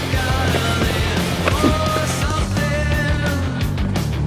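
Loud heavy rock music with distorted electric guitars, bass and pounding drums.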